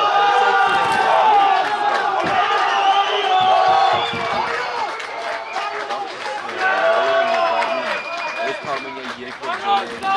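Several men shouting and cheering together in celebration of a goal, overlapping voices with long drawn-out yells. It is loudest in the first few seconds and swells again about seven seconds in.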